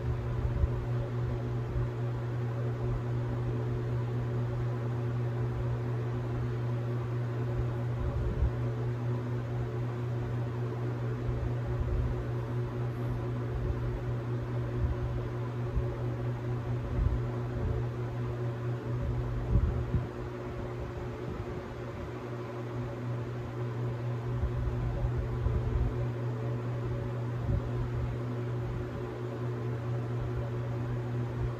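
A steady mechanical hum, like a small motor running, with a faint hiss over it and irregular low bumps throughout.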